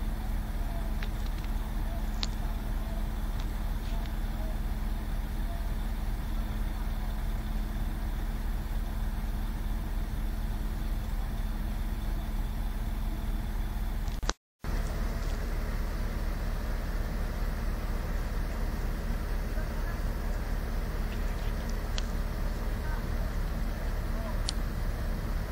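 A steady engine drone from heavy machinery running, with a deep rumble underneath and a few faint clicks. The sound cuts out completely for a moment a little past halfway, then carries on the same.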